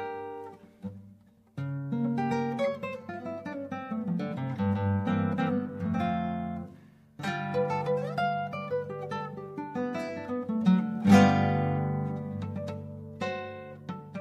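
Solo classical guitar with nylon strings, fingerpicked: runs of plucked notes and ringing chords. There is a short pause about a second and a half in, and a loud strummed chord about eleven seconds in.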